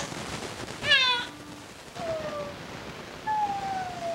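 Infant crying: a short, loud cry about a second in, a brief falling wail at about two seconds, and a longer wail that slides down in pitch near the end.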